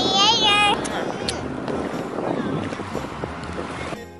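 A child briefly says "yeah" in a high, sing-song voice, then wind buffets the microphone in a steady rushing noise with low rumbles, easing slightly toward the end.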